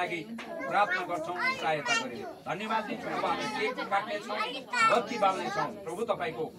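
Speech only: a spoken prayer in Nepali, with voices running on continuously and overlapping.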